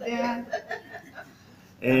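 A short chuckle at the start, followed by a quieter pause before speech resumes near the end.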